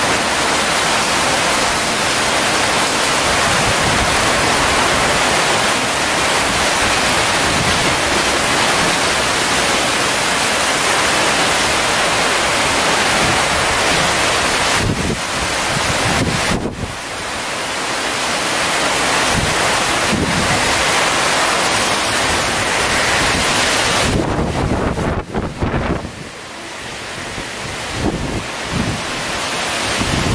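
Super typhoon wind, around 225 km/h, with driving rain: a loud, unbroken rush of noise, with gusts buffeting the microphone. It drops away briefly a little past halfway and again for a couple of seconds near the end before building back up.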